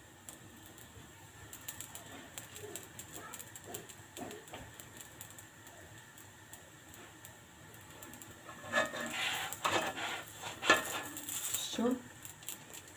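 Faint crackling of a yeast-dough flatbread (Moroccan shiyar) cooking in a little oil in a heavy pan, with louder handling sounds in the last few seconds as a spatula is brought to the pan.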